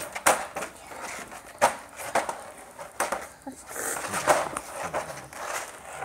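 Irregular clattering knocks and rattles from a wire dog crate as a toy is tugged and knocked against its metal bars during a tug of war with a puppy.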